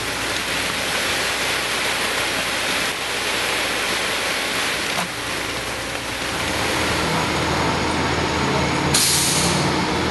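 A truck's diesel engine running steadily on a concrete-pour site, its low hum growing stronger partway through. Near the end comes a short, loud burst of hissing air.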